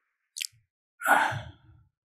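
A man sighs through the lectern microphone, a breathy exhale lasting about half a second, which comes after a short hiss about half a second in.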